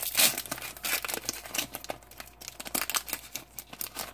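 Foil booster pack wrapper crinkling and tearing as it is torn open by hand: a dense run of sharp crackles, loudest just after the start.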